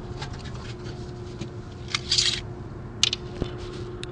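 A steady low hum with a brief scratchy rustle about two seconds in and a sharp click about a second later.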